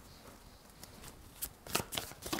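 A tarot deck being shuffled by hand, the cards sliding and clacking together. It is faint at first, then a few short, sharp card clacks come in the second half.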